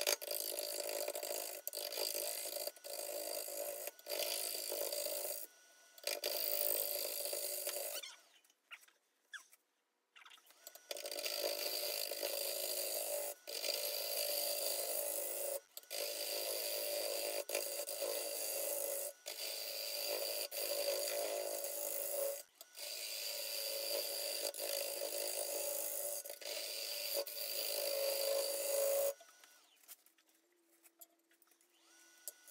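Bowl gouge cutting a spinning green black walnut bowl blank on a wood lathe, a steady shaving noise over the running lathe. The cutting comes in stretches broken by abrupt stops, with a longer pause about eight to ten seconds in.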